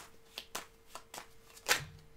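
Tarot cards being shuffled by hand: a quick, irregular run of light card clicks, with a louder snap near the end.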